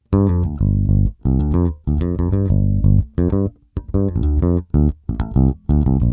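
Electric bass guitar recorded direct into an audio interface, playing a line of short plucked notes with brief silent gaps between phrases.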